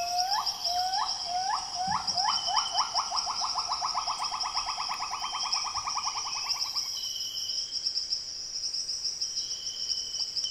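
A rainforest bird calling: a series of short rising whistled notes that speed up into a rapid run and stop about seven seconds in. A steady high insect drone goes on throughout.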